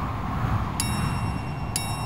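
Two bright, high chime dings about a second apart, each ringing on after its strike, over a steady low background rumble.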